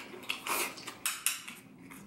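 Chopsticks clicking and scraping against a small porcelain bowl: several sharp clicks and a short scrape in the first second and a half.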